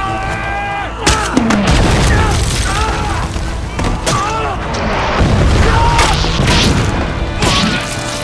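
Battle soundtrack of men yelling and screaming in hand-to-hand fighting, with booms and sharp impacts and a music score underneath.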